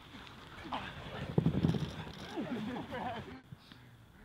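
Men's voices on a training pitch, calling out and laughing, with a brief run of loud thumps about a second and a half in.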